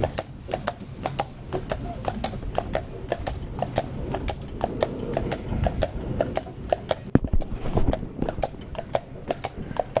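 Hooves of a Friesian horse pulling a cart on a tarmac road: a steady, evenly spaced clip-clop of about three hoofbeats a second.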